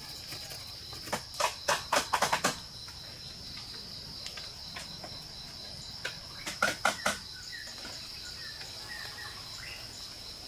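Insects droning steadily at a high pitch, with two bursts of sharp knocks: a quick run of them about a second in and another about six seconds in.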